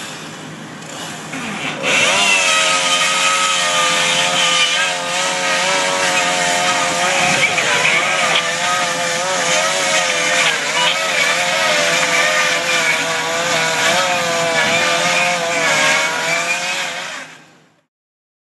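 An engine running at high speed, its pitch wavering slightly, starting about two seconds in and fading out near the end.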